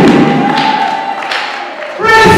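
Amplified singing breaks off, leaving a fading wash of congregation voices in a reverberant hall, with two sharp knocks about half a second and just over a second in.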